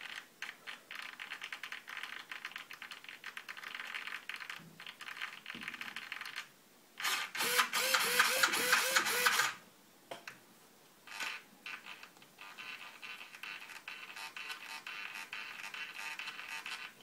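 Airtronics 94761Z digital servo buzzing and chattering in rapid small steps as its arm is moved slowly across the protractor in a smoothness test. Around the middle it gives a louder, pitched whine for about two and a half seconds as the arm swings quickly, then goes back to the quieter chatter.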